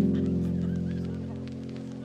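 Lofi instrumental music: a single sustained low chord, struck just before and fading slowly, with faint crackly clicks over it.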